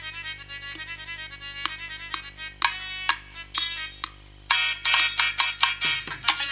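Harmonium playing a stepping melody in a stage-drama music interlude, with single drum strokes that turn into a denser, louder drum pattern about four and a half seconds in. A steady low electrical hum from the sound system runs underneath.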